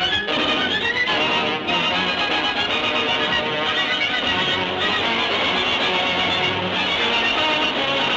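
Orchestral film-trailer score with prominent violins, playing loud and steady.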